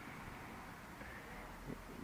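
Faint steady background noise with no distinct sound: a pause in the talk.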